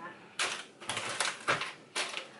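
Food containers being put onto a kitchen cupboard shelf: a handful of light knocks and clatters, the loudest about half a second in and again about a second and a half in.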